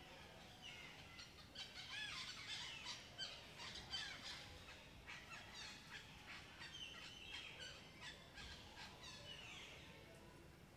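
Several forest birds calling faintly: a flurry of short chirps and whistles in the first few seconds, then a single held whistled note a little past halfway.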